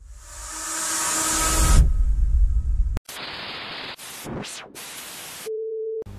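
Intro sound effects: a hissing swell that builds for about two seconds over a low rumble and cuts off sharply halfway through, then bursts of TV-style static that cut in and out and change in tone, ending in a steady low electronic hum.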